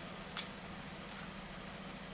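A single light click about half a second in, with a fainter tick later, as fingers handle a small cosmetics box and jar, over a steady low room hum and hiss.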